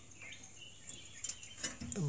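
Faint outdoor background with a few faint bird chirps and a steady high hiss, with a few light clicks as a wire is handled against the compressor's terminal pins. A man's voice starts near the end.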